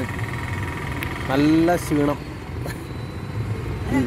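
A steady low hum of a running engine, like a vehicle idling close by, with a short spoken phrase over it partway through.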